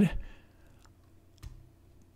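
Two faint clicks in near silence, the clearer one about one and a half seconds in, after the end of a spoken word.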